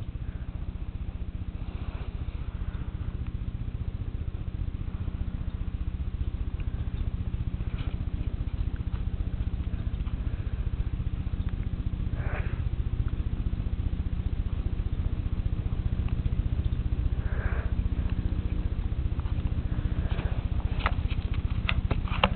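A steady low electrical hum with a fast buzz running under it, and a couple of faint, brief rustles about halfway through.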